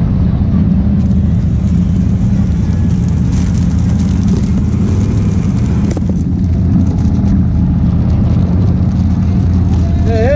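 Can-Am side-by-side UTV engine running steadily at low speed, a constant low drone.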